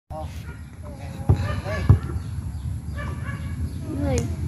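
Men's voices calling out in short bursts, with two sharp thumps a little over half a second apart about a third of the way in.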